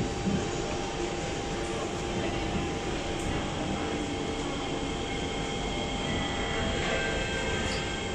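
Steady cabin hum inside a Siemens C651 metro car standing at a station with its doors shut, with a few faint steady tones from the onboard equipment over the noise.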